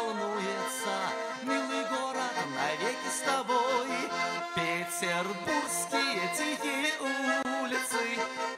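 Russian garmon (button accordion) playing a lively melodic instrumental passage of a folk-style song, with chords held under the tune.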